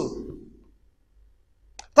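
A man's speaking voice trails off, then a pause of near silence, broken by one faint short click, like a mouth click, just before he speaks again.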